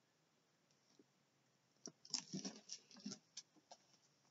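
Near silence, then about two seconds in a short run of irregular light clicks and rustles from objects being handled, lasting about two seconds.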